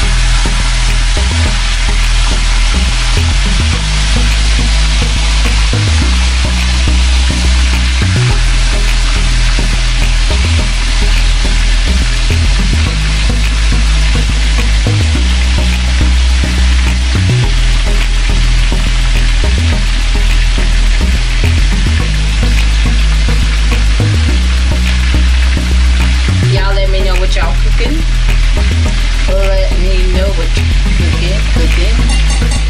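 Chicken pieces frying in hot oil in a pan: a loud, steady sizzle. A low, repeating bass line of background music runs underneath.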